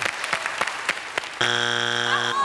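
Studio audience clapping and laughing, then about 1.4 s in the Family Feud strike buzzer sounds, a loud, steady electronic buzz marking a wrong answer.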